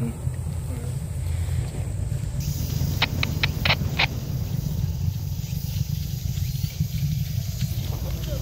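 A steady low rumble, with a quick run of five sharp clicks about three seconds in.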